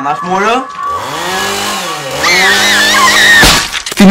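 A voice making a long, drawn-out buzzing vocal noise that wavers in pitch, ending in a sharp bang about three and a half seconds in.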